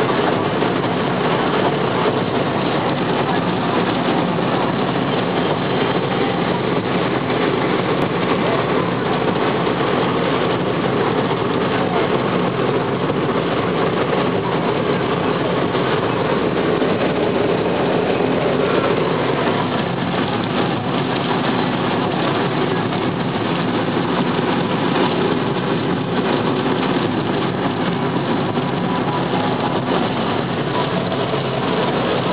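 Steady in-cabin noise of a car driving at highway speed on a rain-soaked road: tyres on wet pavement and engine.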